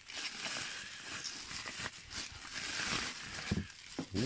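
Plastic bubble wrap crinkling and rustling as it is handled and pulled out of a cardboard box, with a steady run of small crackles.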